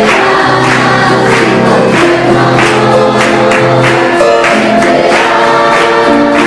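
Congregation singing a hymn to electric keyboard accompaniment, with a steady beat of about two strokes a second.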